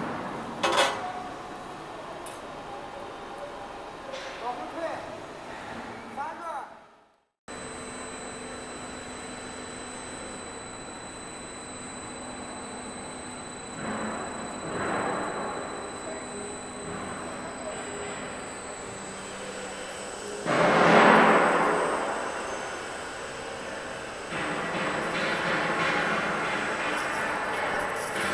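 BIGMAC U12 heavy-gauge U-channel roll forming machine with its row of gear motors running: a steady electric-motor hum with a thin high whine. A louder rush of noise comes about three-quarters of the way through.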